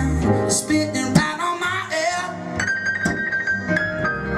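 Live acoustic music in an instrumental passage: a plucked upright bass under a melody line, with one long high note held steadily in the second half.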